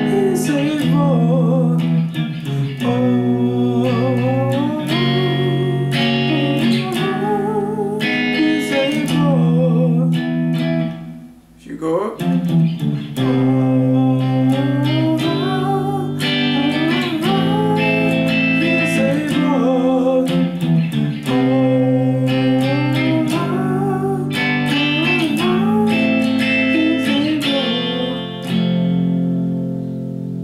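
Electric guitar playing held chords with a clean tone, the chord changing every second or two, with a man singing along over it. There is a brief break in the playing about eleven seconds in.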